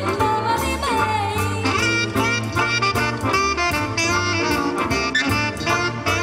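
Live big band playing a jazz-swing arrangement, with saxophone and brass lines over bass guitar and a steady drum beat.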